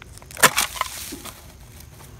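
Roots and dry leaf litter snapping and crackling as an old radio cabinet buried in the soil is pulled free by hand. There is one sharp snap about half a second in, then a second of crackling and rustling.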